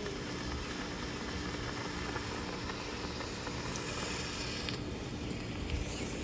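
Steady hiss of a burning smoke bomb pouring out smoke; the higher part of the hiss fades about five seconds in.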